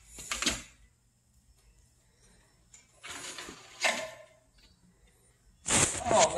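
A few short scraping and rustling sounds from a thin wire being worked into the steel frame of a combine header. The loudest comes near the end.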